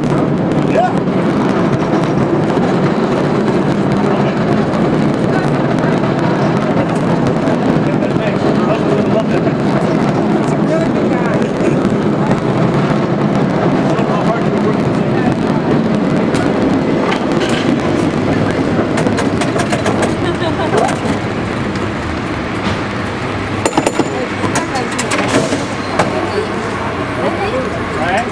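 San Francisco cable car running along its track, a steady rolling rumble and rattle heard from the running board, with passengers' voices throughout. Sharp clacks come in clusters in the second half and again near the end.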